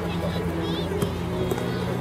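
Faint distant voices over a steady low hum, with no kicks or shouts standing out.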